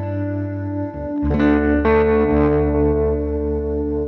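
Background instrumental music: sustained guitar chords with heavy effects, changing to a new chord about a second in.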